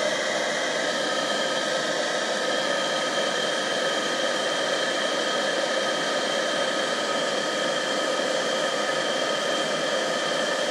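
Amarine Made in-line blower fan running steadily: a constant rush of air with faint steady whining tones. It is switched on by its thermostat once the amplifier has passed 35 °C.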